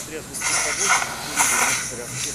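Two bursts of high hissing noise over faint, muffled voices.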